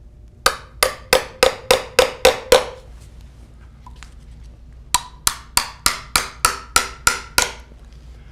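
Small hammer striking a metal probe tapped into a timber piling, sending a stress wave across the wood to a stress wave timer to check for decay. Two runs of sharp, evenly spaced taps, about three a second, each ringing briefly: eight taps, then nine more starting about five seconds in, the second run ringing higher.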